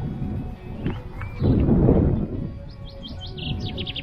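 Small songbirds chirping: a single curved call about a second in and a quick run of high notes near the end, over a low rumbling background.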